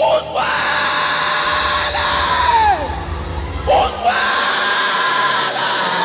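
A man shouting long, drawn-out cries into a microphone through a hall PA, two of them, each held high and then dropping in pitch at the end, with music underneath.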